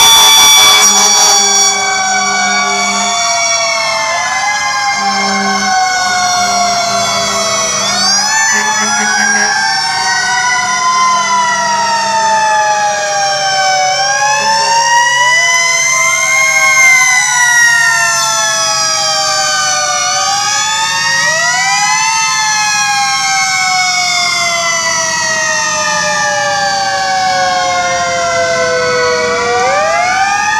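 Several fire truck sirens wailing at once and overlapping. Each winds up quickly, then falls slowly over several seconds.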